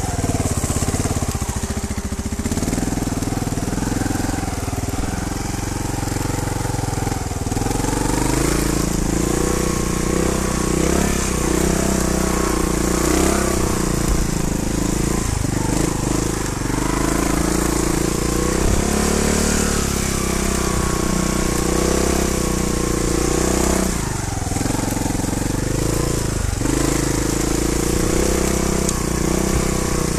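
Trials motorcycle engine running under way, its pitch rising and falling with the throttle, with a few brief drops off the throttle.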